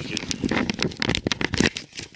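Dense, irregular rustling and crackling clicks from a person moving about and handling things in the dark.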